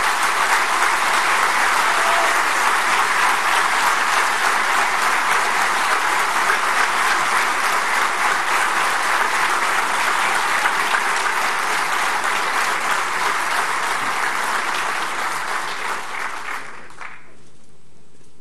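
A large audience applauding, sustained clapping that dies away near the end.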